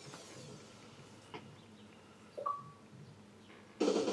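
A quiet lull in the episode's soundtrack with a soft click and a short high blip, then music comes in suddenly near the end.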